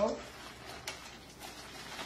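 A couple of brief, faint crackles of a paper envelope being handled, about a second in.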